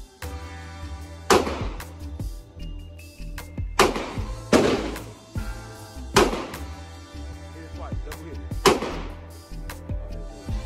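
Five gunshots, irregularly spaced: about a second and a half in, two close together around four and four and a half seconds, one near six seconds and one near nine seconds. Background music with a steady bass beat runs underneath.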